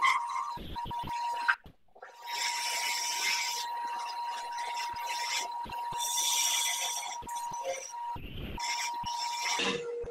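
Wood lathe spinning a small turned top while a turning tool cuts the wood, giving stretches of hissing shavings over a steady high whine. The sound cuts out briefly twice.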